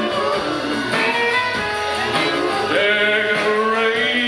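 Live country band playing: a man singing over strummed acoustic guitar and other plucked strings.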